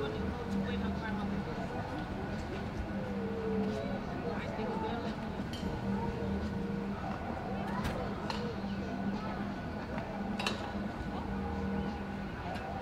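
Indistinct voices of people talking in the background over a steady low hum, with a few sharp clicks, the loudest near the end.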